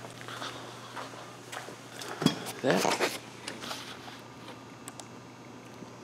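Faint scattered taps and clicks of someone moving about while carrying the camera, over a steady low hum, with a sharper knock about two seconds in.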